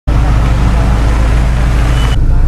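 A vehicle's engine running with a deep, steady rumble under a constant rushing noise.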